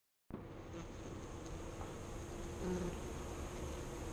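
A crowd of honeybees buzzing steadily, starting a moment in.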